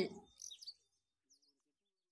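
A few faint, short bird chirps within the first second, then silence.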